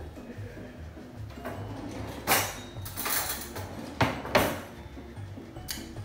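Background music with a steady low beat, over several short clatters of a metal spoon against a ceramic cereal bowl as it is picked up and dipped into the cereal.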